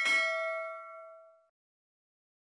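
Notification-bell sound effect: a single bright bell ding at the start that rings out and fades away over about a second and a half.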